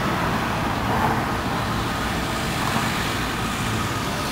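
Steady street traffic noise from passing road vehicles.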